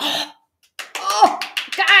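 A woman clears her throat once, a short rough burst, followed by a brief pause before voice sounds resume about a second in.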